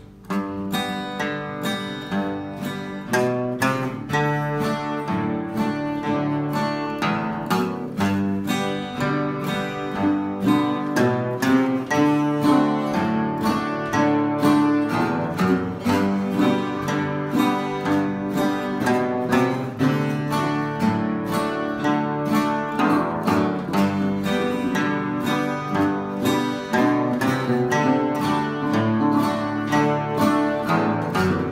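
Acoustic guitar played in a steady oldtime rhythm, about three picked strokes a second, with bass notes and strums and bass runs walking between chords.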